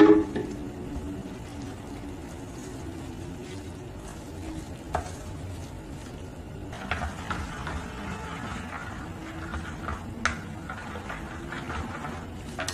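Chopsticks stirring flour and water into a thin batter in a stainless steel bowl, with a wet, scraping sound throughout. There is a sharp knock right at the start, and a few sharp clicks of the chopsticks against the bowl, busiest in the last few seconds.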